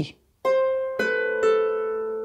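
Three notes plucked on a lever harp, about half a second apart, each ringing on and overlapping the next as they fade.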